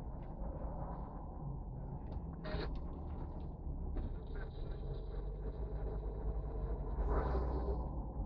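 Car driving in slow traffic, heard from inside the cabin: a steady low rumble of engine and road noise. A faint high steady tone joins about halfway through for some three seconds, and a brief louder noise comes near the end.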